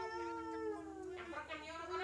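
Long, drawn-out vocal cries from two voices at once, each held over a second with a slight rise and fall in pitch; one cry ends and another begins about one and a half seconds in.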